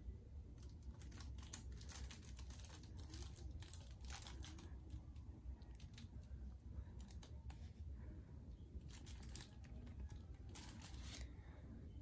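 Faint, scattered clicks and rustles from the stereo unit and its remote control being handled, over a low steady hum.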